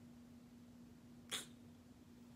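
Near silence: faint room tone with a steady low hum, broken once, a little over a second in, by a single short, sharp hiss of breath.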